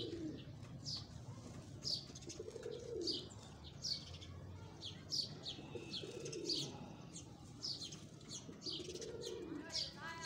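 Domestic pigeons cooing, about three low calls that rise and fall, while short high chirps from small birds repeat throughout.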